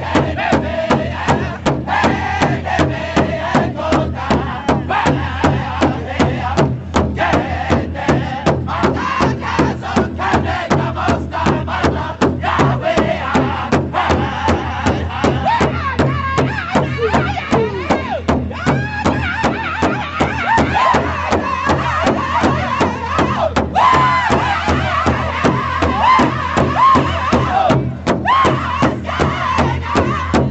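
Powwow drum group: several men striking one large shared hide drum together in a steady, even beat of about two strokes a second while singing in unison in high voices.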